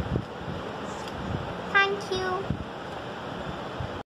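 Two short steady toots, one just after the other, about two seconds in, sounding like a horn honked twice, over a steady background hiss with a few light knocks.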